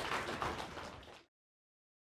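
Audience applause fading out, then cutting off to silence a little over a second in.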